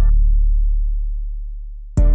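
An 808 bass note ringing alone and fading away after the melody and hi-hats drop out. The full beat with hi-hats cuts back in right at the end.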